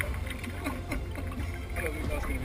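Wind rumbling steadily on the camera microphone on the deck of an ocean rowing boat, with a man's voice heard briefly and quietly.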